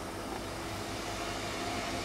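Steady background noise of a theatre hall, a even hiss with a faint low hum and no distinct events, during a silent pause on stage.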